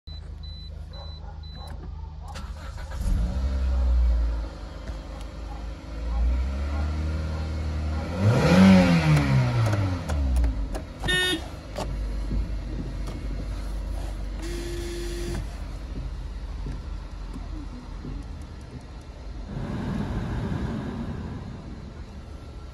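A Toyota Corolla Verso's 1.6-litre petrol four-cylinder is cranked and starts after a few dashboard beeps. It is revved once, rising and falling, then settles into a steady idle. A short tone sounds in the middle and a rush of noise comes near the end.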